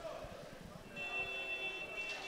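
Underwater referee's signal horn sounding a steady high tone that starts about halfway through and holds: the call that stops play.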